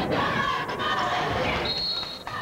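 Basketball bouncing on the court during a game, a few sharp knocks over crowd voices in a large gym. A short high held tone sounds near the end.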